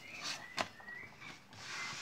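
Playing cards handled on a cloth close-up mat: a card slid out of a ribbon-spread deck, with a sharp click about half a second in, then the spread scooped up into a pile with quiet rustling near the end.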